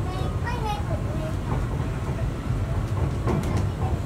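Bombardier Innovia Monorail 300 train running along its elevated guideway, heard from inside the front of the car: a steady low rumble, with a few light clicks about three seconds in. A voice is heard briefly over it near the start.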